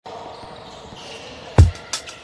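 A basketball bouncing on a hardwood court: one heavy, deep bounce about three-quarters of the way through, then a lighter tap at the end, over a faint soft background swell.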